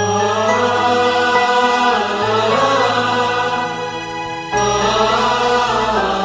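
Bollywood film soundtrack music with chanting voices, starting suddenly over a softer keyboard passage; it dips briefly about four seconds in, then comes back in full.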